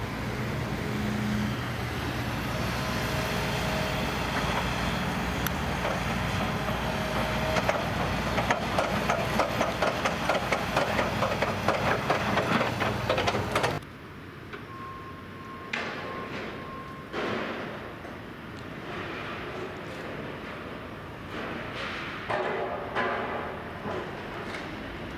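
Diesel engine of a tracked excavator running steadily at a demolition site, joined about halfway through by a fast run of sharp metallic clanks and knocks. The sound cuts off suddenly, giving way to a quieter background with a few scattered knocks.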